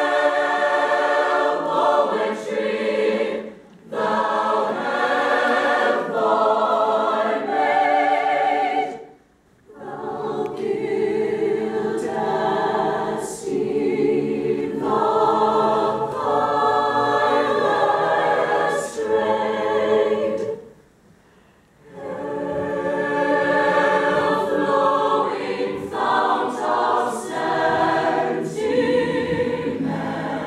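Large mixed chorus of stage singers singing unaccompanied in sustained chords, in phrases broken by three short pauses: about 3.5 seconds in, about 9.5 seconds in, and about 21 seconds in.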